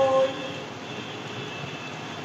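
Steady, even background noise with no rhythm, just after a spoken word trails off at the start.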